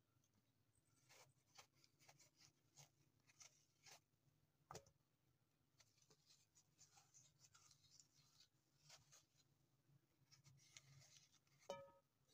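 Very faint scraping and clicking of a kitchen knife paring the skin off an apple by hand, in short irregular strokes over a low steady hum. A brief pitched squeak comes just before the end.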